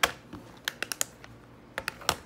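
Sharp clicks and taps of a plastic Blu-ray eco case being handled: one click at the start, a quick run of clicks under a second in, and a couple more near the end.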